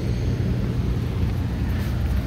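Steady low hum of a rooftop HVAC unit running.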